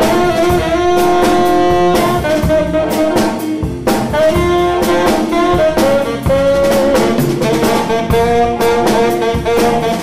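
Live jazz band playing, with a saxophone carrying the lead line in long held notes over drum kit, electric guitar and keyboard.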